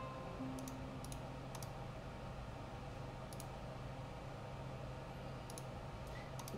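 A handful of sharp computer mouse clicks, spaced unevenly, over a low steady hum.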